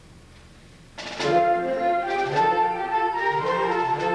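Concert band of woodwinds and brass coming in together about a second in, after a hush, and playing on: a moving melody over held lower notes.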